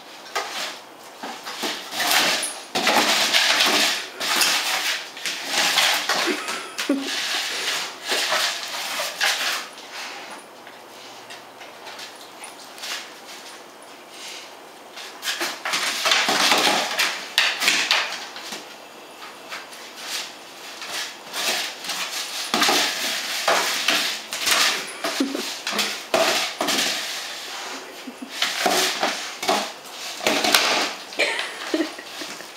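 German shepherd playing with a hollow tube toy on a vinyl floor: rapid clattering knocks and scrapes of the tube being pushed, batted and dropped, mixed with the dog's scrabbling feet. The clatter comes in busy spells, with a quieter stretch a third of the way in.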